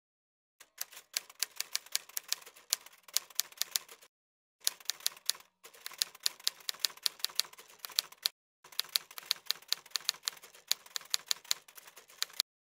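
Typing sound effect: rapid key clicks, about seven a second, in three runs separated by short pauses, matching text being typed out letter by letter.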